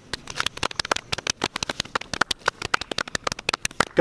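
Hands clapping close to the microphone: a rapid, irregular run of sharp claps.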